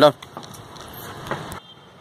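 A man's short spoken command at the start and another fainter one about a second later, over a steady background noise that cuts off suddenly about one and a half seconds in.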